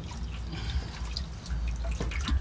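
Water dripping and splashing as a person washes his hands and face, in short irregular splashes over a low background rumble.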